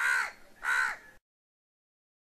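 A crow cawing twice in quick succession, two harsh calls each about a third of a second long. The sound then cuts off abruptly a little over a second in.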